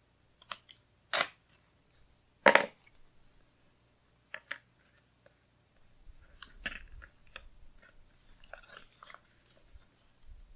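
Washi tape being handled and peeled off its paper card and laid on a planner page: a few short crinkling, crackling noises, the loudest about a second and two and a half seconds in, then lighter scratchy rustling as the strip is pressed down.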